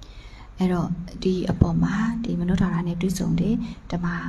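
Speech only: a woman talking in Burmese into a handheld microphone, starting about half a second in after a short pause.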